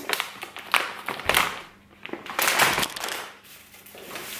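Crinkly plastic packaging of a bag of chocolates rustling and crackling as it is handled and put down, in four or five short bursts with brief pauses between.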